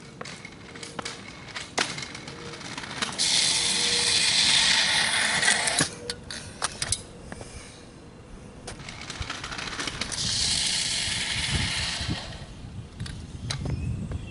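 Razor kick scooter's wheels rolling on asphalt: a rolling hiss that rises and cuts off about six seconds in as the scooter stops, then a few clicks and knocks. It starts rolling again about nine seconds in and fades as it moves away.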